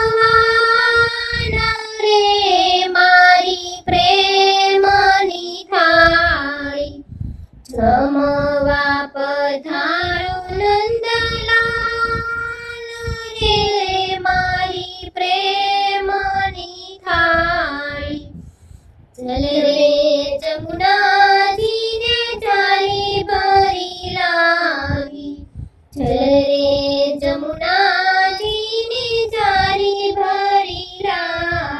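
A high voice singing a Gujarati Krishna thal, a devotional song offering food to Krishna, in long held phrases with short breaks about a quarter, two thirds and most of the way through.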